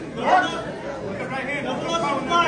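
Voices of people around the ring talking and calling out over one another, a background chatter with no single clear speaker.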